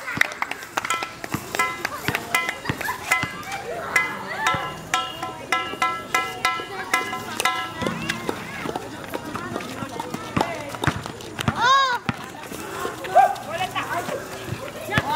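A basketball bouncing on a concrete court and players clapping their hands, amid players' voices; a long loud shout comes about twelve seconds in.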